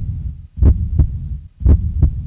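Heartbeat sound effect: deep double thumps, one lub-dub pair about every second, used as a suspense beat.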